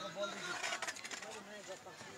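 Indistinct calls and chatter of players and spectators at an outdoor football match, with a few short clicks or knocks about a second in.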